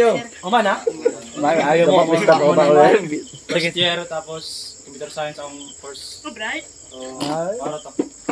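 Crickets trilling steadily, under several people's voices talking and calling out, loudest in the first few seconds and then more scattered.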